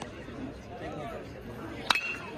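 Baseball bat striking a pitched ball near the end: a single sharp crack with a brief ring after it, over chatter from spectators.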